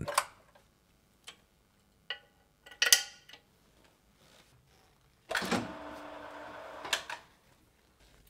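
Quiet metallic clicks of loudspeaker rigging hardware, a splay link and a locking pin being released, the sharpest with a brief ring. A little past midway a steady hum sets in, lasts about two seconds and ends with a click.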